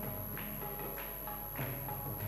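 Devotional kirtan music in a gap between sung lines. A steady held drone plays with a low drum pattern, and sharp percussive strokes come roughly every half second.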